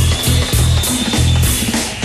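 A live band playing a reggae song, with a heavy bass line and a steady drum beat.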